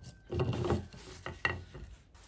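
Two abrasive flap discs handled on a wooden tabletop by gloved hands: a short scraping shuffle of the discs against the wood, then two light knocks about a second and a half in.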